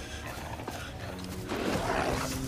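Velociraptor vocalisation from film sound design: a rising-then-falling squawking call that begins about a second and a half in, over a low sustained music score.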